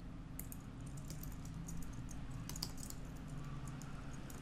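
Computer keyboard typing: a quick, uneven run of quiet keystrokes, with a faint steady low hum beneath.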